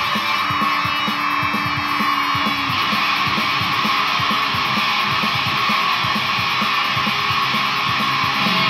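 Electric guitar played through a multi-effects processor with heavy distortion, a metal riff over a steady low pulse of about four to five beats a second, with a held note ringing over the first few seconds.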